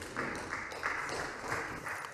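Sparse applause from a few people in a council chamber, single claps about three a second.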